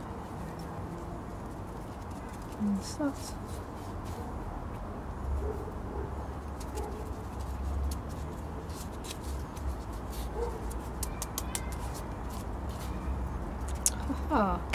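Light scraping and crackling of potting mix being firmed into a small plastic pot around a cactus by hand and with a small trowel, over a low steady hum. About three seconds in come two short rising calls.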